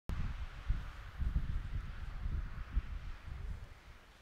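Wind buffeting the camera microphone in uneven gusts, easing off near the end, over a steady hiss.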